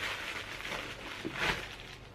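Paper mailing package being opened by hand: paper rustling and crinkling, with a sharper crinkle about one and a half seconds in.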